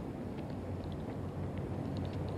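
Steady outdoor background noise, a low rumble, with faint short high-pitched chirps scattered through it.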